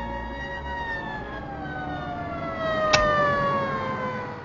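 Police car siren winding down, its pitch falling steadily over several seconds, with one sharp knock about three seconds in.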